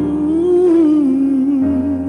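A woman's voice singing one long, wavering note that slowly falls in pitch, over sustained accompaniment chords; a low bass note comes in about one and a half seconds in.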